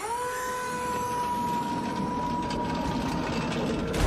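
A steady mechanical whine that dips slightly in pitch as it starts and then holds, with a low machine rumble building beneath it.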